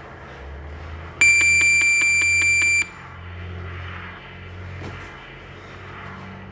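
Electronic gym round timer sounding one loud, high, shrill beep of about a second and a half, with a fast buzzing pulse of about five beats a second.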